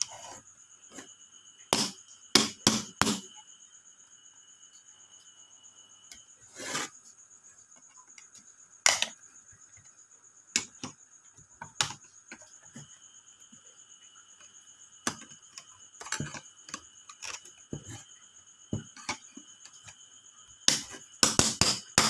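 Sharp clicks and knocks of a plastic-and-sheet-metal automatic transfer switch being handled and put back together with a screwdriver, in scattered bursts with a cluster near the end. Under them, a steady high chirring of crickets.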